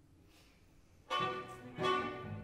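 Baroque string ensemble on period instruments (violins, cello and double bass): after a hushed pause of about a second, the strings come in loudly with accented chords, one roughly every 0.7 seconds.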